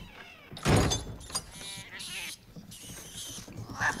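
Film sound effects: a door bangs shut about a second in, then a small animal gives a high squealing cry.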